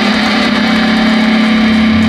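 Rock music held on one sustained, distorted electric guitar note that drones steadily; a lower bass note comes in near the end.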